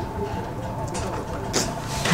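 Steady background noise with a faint continuous hum, no distinct event standing out.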